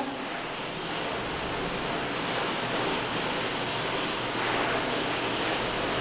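A steady, even hiss of background noise with no distinct events in it.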